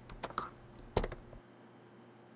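Computer keyboard keystrokes and mouse clicks: a few quick light clicks, then a louder group of three clicks about a second in.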